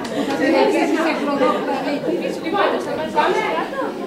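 Chatter of many overlapping voices, a group of children talking at once, with no single voice standing out.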